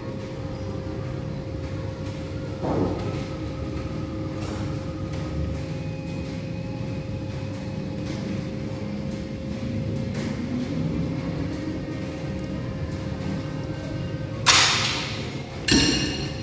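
Faint background music with a steady held tone under it while a cable bicep curl is done on a multi-station gym machine. Near the end comes a loud clatter that rings out for about a second, then a thud, as the bar is let go and the machine's weight stack drops.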